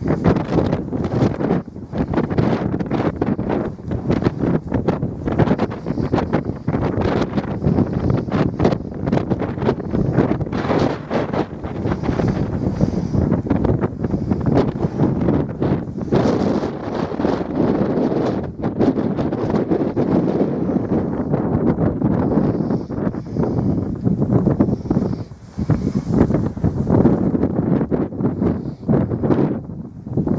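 Wind buffeting the microphone, a loud, gusty rumble that rises and falls throughout.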